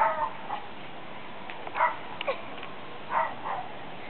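Small dogs barking and yipping: a handful of short, faint barks spread over a few seconds.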